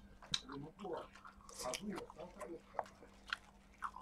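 Close-up eating sounds: open-mouthed chewing and smacking on a mouthful of leafy greens and rice, with a few sharp clicks of chopsticks against a plastic food container.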